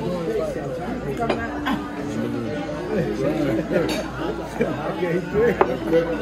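Several people talking over one another at a crowded dining table, with a few sharp clinks of glasses and dishes.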